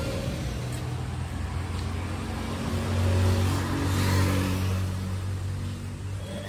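Road traffic: a motor vehicle's low engine drone swells as it passes, loudest about three to four seconds in, then fades.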